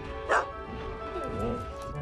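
A dog barks once, sharply, about a third of a second in, then gives a short whine, over orchestral film score.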